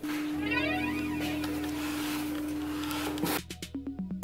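Background music: one note held steady, with a sweeping effect over it early on, which breaks off about three and a half seconds in.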